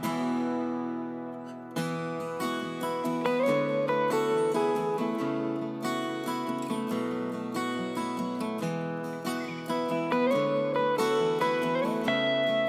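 Background music: acoustic guitar playing plucked chords, softer at first and fuller from about two seconds in, with a few sliding notes.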